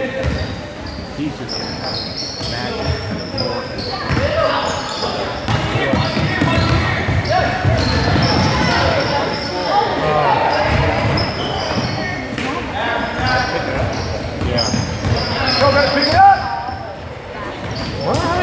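Basketball being dribbled on a hardwood gym floor during game play, amid the voices of players and spectators in a large gym.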